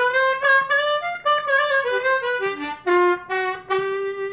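Kongsheng Amazing 20 diatonic harmonica in C played as a short melody of single notes stepping up and down, one note slid up into. It is a harp whose lower reeds leak air and which is harder to play, though that trouble can't be heard in the tone.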